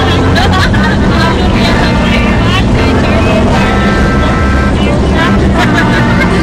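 Steady engine and road rumble of a moving van heard from inside the cabin, with passengers talking over it.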